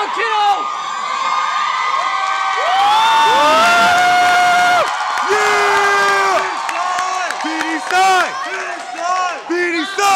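Crowd cheering and whooping, with long held shouts a few seconds in and then a quick run of short repeated calls, about two a second, near the end.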